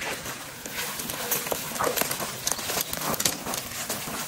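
Footsteps through tall grass and brush, with stems and leaves swishing and crackling against legs and gear, in an uneven walking rhythm.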